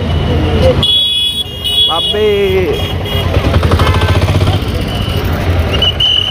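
Vehicle horns honking over steady street-traffic rumble: a high-pitched horn sounds in two blasts about a second in, with a fainter horn tone held on toward the end.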